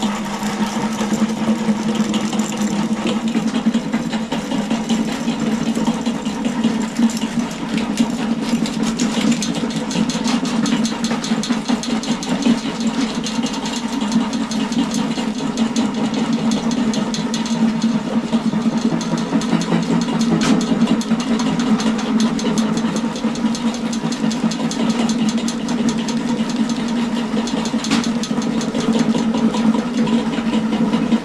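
Electric drum-type drain cleaning machine running steadily, its motor humming with a fast, fine rattle as the spinning cable works through a clogged house trap in a sewer line.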